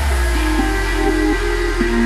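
Electronic background music: a held deep bass note under a simple stepping melody, with no drum beat.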